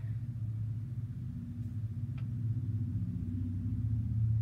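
A steady low hum that runs on unchanged, with a faint click about halfway through.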